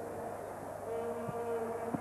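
Quiet basketball-arena background under a TV broadcast, with a steady held tone joining about halfway through.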